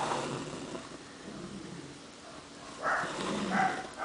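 Doubled embroidery thread drawn up through fabric stretched in a hoop, a soft rustling pull, with a brief faint sound about three seconds in.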